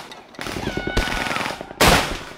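Field gun firing: a sharp bang about a second in, then a much louder blast near the end, with a brief high whistle falling in pitch between them.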